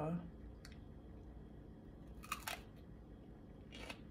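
A bite into a small raw orange pepper: a short crunch about two seconds in, then faint chewing near the end.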